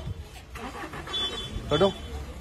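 A car engine running, a steady low rumble, under men's voices, with one man calling out near the end.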